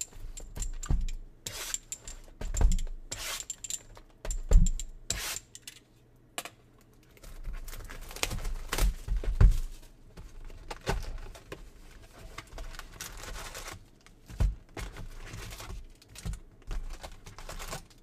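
Cardboard hobby boxes and baseball card packs being opened and handled: irregular rustling and tearing of cardboard and wrappers, with scattered clicks and knocks on the table.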